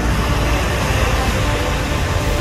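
Steady low rumbling noise of wind buffeting a phone's microphone.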